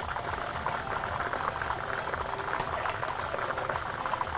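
Lottery draw machine mixing its plastic balls in a clear globe: a dense, steady rattle of balls clattering against each other and the walls as they are mixed before the next ball is drawn.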